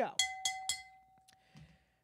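A stemmed wine glass tapped three times with a fork in quick succession, each a bright clink, its clear ringing tone dying away over about a second and a half.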